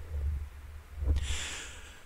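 A man drawing a breath between sentences, about a second in and lasting about half a second, over a low hum.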